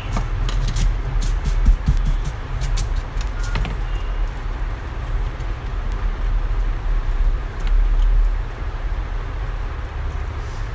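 Small sharp clicks and taps of a screwdriver and laptop parts being handled, several in the first four seconds, over a steady low rumble that carries on throughout.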